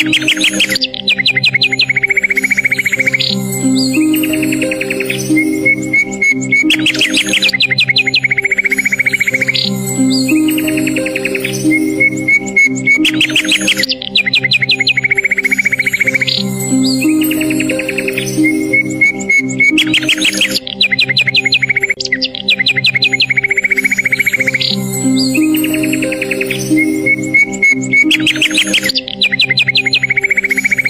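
Relaxing instrumental music with steady held tones, mixed with bird chirps and quick trills; the same pattern of calls comes round again about every six and a half seconds, as in a looped track.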